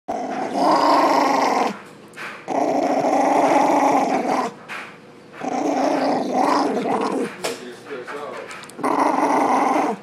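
A poodle growling aggressively, teeth bared, at a hand touching it: four long growls of one to two seconds each with short breaks between.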